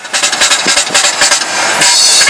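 Car driving on an unpaved road, with loud road and wind noise heard from inside the car, rough and uneven with many small knocks.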